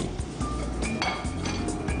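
A few clinks of glass bowls against each other as corn kernels are tipped and scraped from a small glass bowl into a glass bowl of batter, over steady background music.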